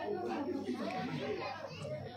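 Faint background chatter of several voices in a hall, well below the level of the main speaker's voice.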